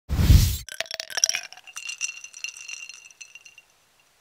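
Opening sound effect: a deep thump, then a run of sharp clinks with a high ringing that fades out over about three seconds.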